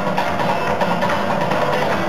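Acoustic guitar playing a blues accompaniment, strummed with repeated sharp strokes and no singing.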